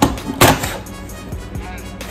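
Background music, with a short rush of air about half a second in: a cold draw pulled through a freshly cut, unlit cigar that is drawing tight.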